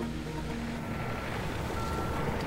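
Construction-site background: a low, steady engine rumble with a truck's reversing alarm beeping about once a second, while a soft music bed fades out in the first moments.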